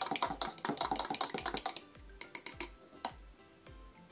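An old fork beating thickening paraffin wax in a metal melting pot: rapid clicking and scraping of the fork against the pot for about two seconds, then a few scattered taps before it stops. Background music with a steady low beat runs underneath.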